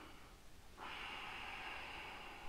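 A man's slow, deep breath in through the nose, beginning just under a second in after a short quiet pause and still going at the end: a faint, steady hiss.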